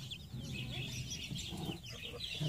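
Brahma hen on the nest, about to lay an egg, making soft low clucks, with many short high chirps throughout.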